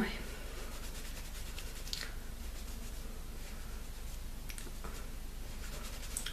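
Faint rubbing and scratching of fingers against the skin on the back of a hand, scrubbing at dried makeup swatches that are stuck fast, with a few light clicks.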